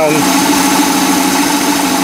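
OMC 230 Stringer 800's small-block Chevy 350 V8 idling steadily, an even hum with no change in speed. The ignition timing is set too far advanced, about 12 degrees.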